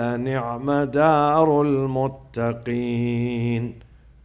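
A man reciting the Quran aloud in a melodic chant, drawing out long notes that waver in pitch, with a short break about two seconds in; the voice stops just before the end.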